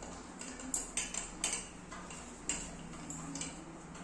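About six light, irregular clicks and taps as a stainless steel pressure cooker, its lid and its handle are handled.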